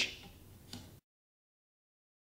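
Faint room tone with a single small click, then the sound cuts off to dead silence.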